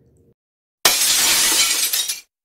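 Edited-in glass-shatter sound effect opening the outro: a sudden loud burst of crashing noise about a second in, holding for about a second and a half and then cutting off abruptly.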